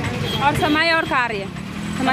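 Voices talking over street traffic, with a vehicle engine idling underneath.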